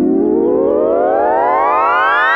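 A synthesizer tone with many overtones gliding steadily upward in pitch, a riser building tension in an electronic dance remix.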